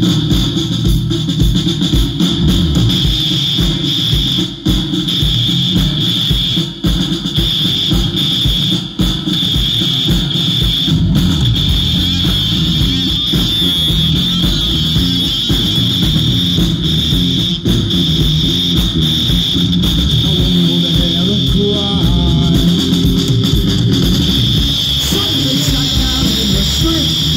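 A live punk band playing loud: a drum kit keeping a steady kick-drum beat under electric guitar and bass guitar.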